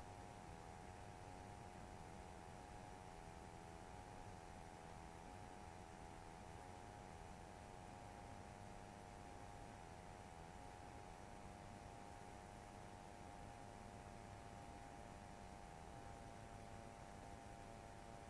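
Near silence: only a faint steady hiss with a few faint steady tones.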